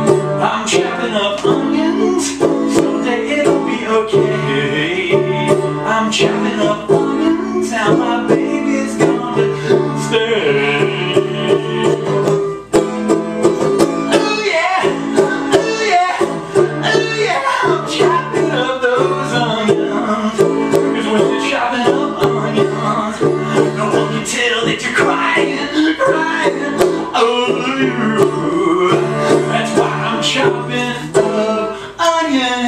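Banjo played live in a steady, continuous run of plucked notes, with a short break in the playing a little under halfway through. Someone laughs briefly about eight seconds in.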